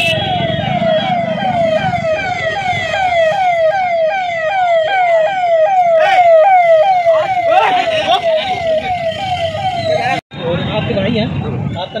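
A siren sounding a fast, repeating falling whoop, about two cycles a second, over road-traffic noise. It breaks off for a moment just after ten seconds in.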